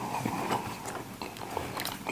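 People chewing mouthfuls of soft apple pie, with wet mouth sounds and a few light clicks near the end.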